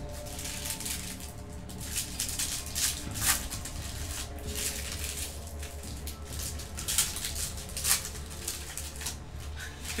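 Trading cards being flicked through and shuffled by hand, with short, irregular papery clicks and slides, and the rustle of a foil pack wrapper. Faint background music and a low hum run underneath.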